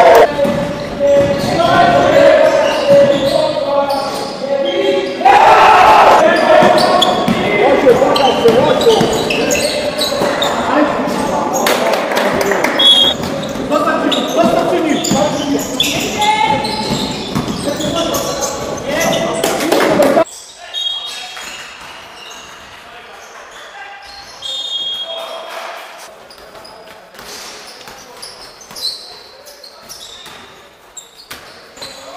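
Live indoor basketball game sound: players' voices calling out loudly over a basketball bouncing on a hardwood gym floor, all echoing in a large hall. About two-thirds of the way through, the loud voices cut off abruptly, leaving quieter dribbling and scattered short squeaks.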